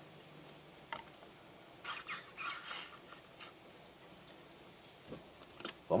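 Plastic syringe and print-head cartridge being handled while fluid is forced through the clogged head. There is a single click about a second in, then a few short scraping rubs of plastic on plastic about two to three and a half seconds in.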